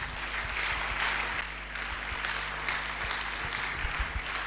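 Congregation applauding, many hands clapping together, starting suddenly and keeping on steadily.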